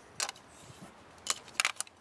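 Plastic parts of a Bandai MagiKing combiner figure clicking as they are handled and snapped into place: a single click soon after the start, then a quick run of several clicks in the second half.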